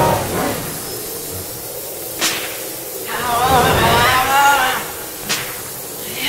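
Sparse free-improvised art-industrial jazz. A sharp crack comes a little over two seconds in, then a wavering, warbling pitched line lasts about a second and a half, and another sharp crack follows near the end.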